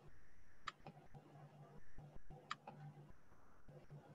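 Faint room tone with a low hum that comes and goes. Two sharp clicks stand out, about two seconds apart, among a few softer ticks.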